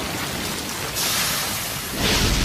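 Sound effect of a huge blast of fire rushing: a steady, noisy hiss that grows brighter about a second in.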